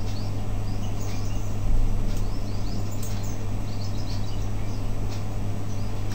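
Steady low electrical hum and hiss from an open computer microphone, with faint high chirps scattered through it and a soft low bump a little under two seconds in.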